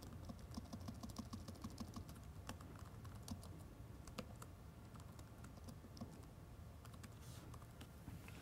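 Faint computer keyboard typing: a stream of quick keystroke clicks, busiest in the first half and thinning out after that.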